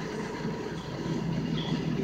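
Street traffic noise: a vehicle's engine running steadily, heard as a TV broadcast re-recorded off a television's speaker.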